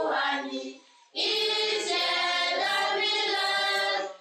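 A group of schoolgirls singing together in chorus, with a brief pause about a second in before the singing comes back in full.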